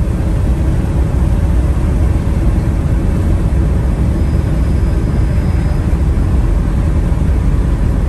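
Inside the cab of a Mercedes Sprinter turbodiesel van at highway speed: steady low engine and road rumble, with a faint high whistle for a couple of seconds near the middle. The driver takes the whistle for a turbo boost leak.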